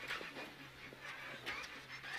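Renault Clio Rally5 engine heard faintly in the cabin as a steady low hum, with a few short soft noises on top.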